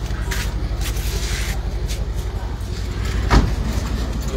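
Power soft top of a Mercedes-AMG C-Class cabriolet folding open, with a mechanical rustle and whir and one loud clunk a little after three seconds in, over a steady low rumble.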